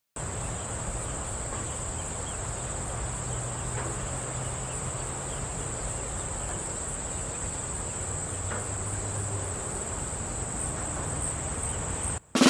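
Crickets trilling: one steady, high, unbroken buzz throughout.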